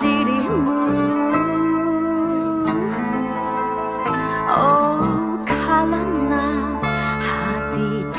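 Acoustic band cover playing: fingerstyle acoustic guitar over sustained bass guitar notes and piano, with a woman singing, and no drums yet.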